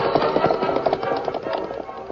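Horses' hoofbeats, a radio-drama sound effect, riding off in an even run of knocks under a short orchestral music bridge.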